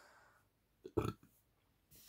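A single short, low throat noise from a person, like a small burp, about a second in; otherwise near silence.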